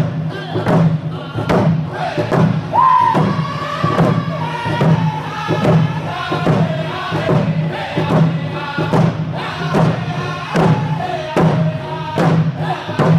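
Round dance song: a group of men singing in unison while beating hide hand drums together in a steady beat. About three seconds in a high voice comes in and the melody steps gradually downward.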